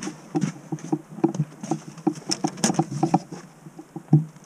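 Raindrops pattering irregularly on the camera's housing as a run of light taps, several a second and uneven in strength.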